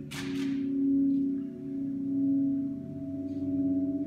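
Orchestra with electric guitar holding a sustained chord of several notes that swells and eases about every second and a half. A short noisy swish sounds right at the start.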